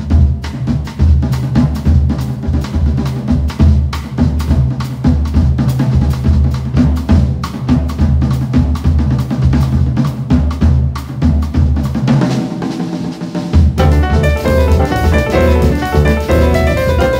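Drum kit playing a fast, busy baião groove on kick drum, snare and cymbals with dense strikes, opening the piece. About 14 seconds in, piano comes in over the drums.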